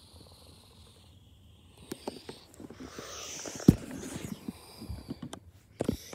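Soft rustling with scattered small clicks, one sharp knock a little past halfway, and a few more clicks near the end.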